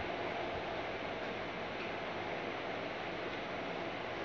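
A steady, even hiss of background noise, the room tone of a small recording room, with nothing else happening.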